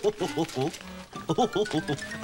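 Children laughing and exclaiming excitedly over background music, with many short voices overlapping. A thin whistle-like tone starts a little after a second in and rises slowly in pitch.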